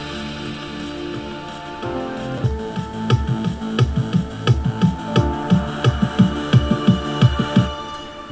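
Drum and bass build-up playing back from FL Studio: sustained synth chords, with a kick drum coming in about two and a half seconds in and hitting more and more often.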